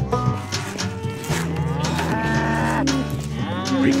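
Cartoon Holstein cows mooing: long, low moos that bend and fall in pitch.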